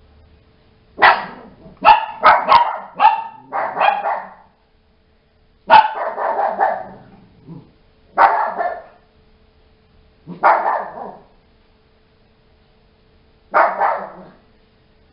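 Small dog barking loudly: a quick run of about seven barks in the first few seconds, then single barks every two to three seconds.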